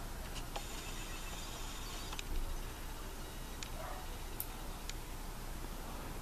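Quiet room tone with a steady low hiss and a few faint, scattered clicks.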